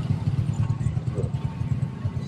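Steady low rumble of an engine running in the background.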